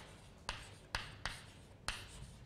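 Chalk writing on a chalkboard: four sharp taps and short scratches as the letters of a word go down, over a faint scratching between strokes.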